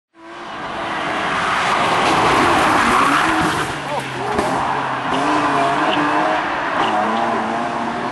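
Rally car's engine revving hard as it passes and accelerates away along the stage, its pitch rising and dropping with the gear changes. Tyre noise on the road surface is mixed in.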